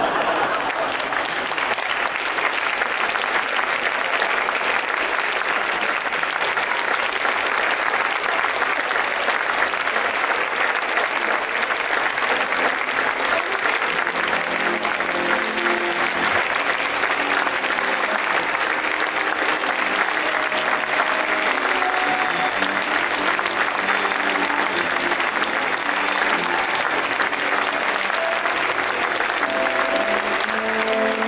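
Audience applauding steadily and at length. About halfway through, a piano accordion starts playing sustained notes under the applause.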